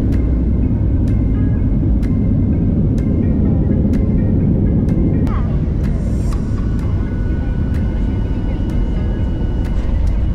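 Steady, loud rumble inside a jet airliner's cabin as the plane rolls along the runway, with a faint tick about once a second. A thin steady whine joins in a little past halfway.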